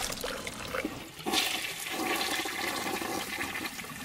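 Toilet flushing: water rushes in about a second in and keeps running steadily, easing off towards the end.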